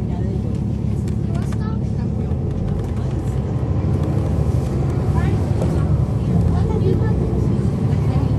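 The Cummins ISL9 diesel engine of a 2011 NABI 416.15 transit bus heard from on board, running steadily with a deep hum, growing a little louder about halfway through.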